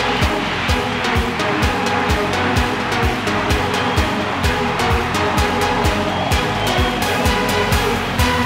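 Electronic dance music: a steady kick drum about twice a second under layered, held synthesizer tones, with no vocals.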